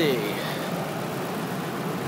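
A Ford Expedition's 5.4-litre V8 idling steadily, heard from the open engine bay.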